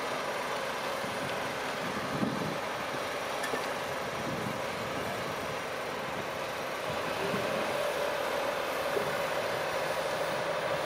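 Heavy diesel engine running steadily, its hum growing slightly louder about seven seconds in, with a light knock about two seconds in.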